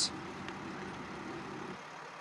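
Faint, steady low rumble of vehicle and street noise, dropping quieter near the end.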